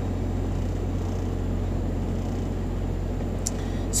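Steady low hum of a semi-truck's engine heard inside the cab, with a faint click near the end.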